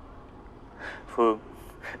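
A tearful woman gasps and gives a short, loud sob about a second in, then draws a sharp breath.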